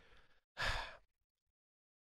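A single breath into a close microphone, lasting about half a second a little way in; otherwise dead silence.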